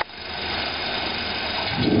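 Motorized roller conveyor running with a steady mechanical hum as a sheet-metal box rides along it; a man's voice comes in near the end.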